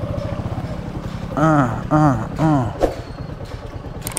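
Motorcycle engine running at low speed with a steady, even putter on a rough muddy track. About a second and a half in, a man's voice goes "aa, aa, aa" three times.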